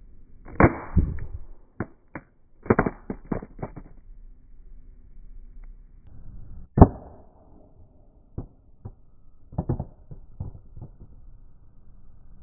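LG G Flex smartphone hitting asphalt face-down in a drop test: sharp clacks and rattling as the phone strikes and bounces, with a cluster of hits in the first few seconds, one loud crack about seven seconds in, and a few lighter taps after it.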